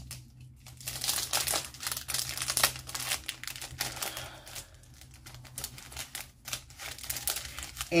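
Packaging crinkling and rustling as it is handled, a run of irregular crackles.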